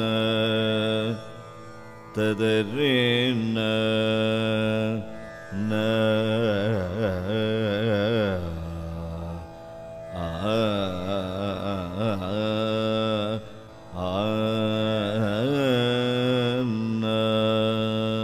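Male voice singing a wordless Carnatic raga alapana in Shankarabharanam on open vowels, with sliding, oscillating gamakas and long held notes. The phrases run a few seconds each, with short breaks between them.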